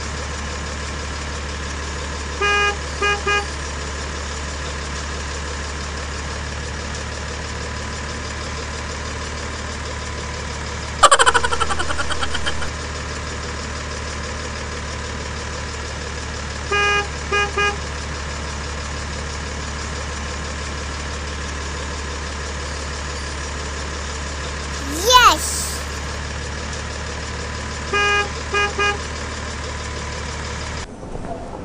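Electronic toy-vehicle sound effects: a steady engine-like drone with short horn beeps in groups of three, coming back every 11 to 14 seconds. A sudden loud crash-like burst rings out about 11 seconds in, and a fast falling whoosh comes near the end.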